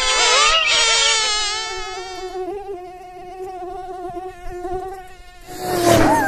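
Mosquito buzzing sound effect: a high, wavering whine that fades away gradually. A sudden loud noisy burst comes near the end.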